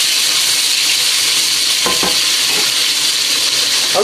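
Chicken quarters and frozen red peppers sizzling in hot olive oil in a stainless steel pot: a loud, steady hiss as a wooden spoon stirs them, with one short knock about halfway through.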